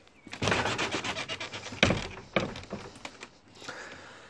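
Rubbing and rustling of someone moving close past a wooden greenhouse frame, with a sharp knock about two seconds in and a few lighter clicks after.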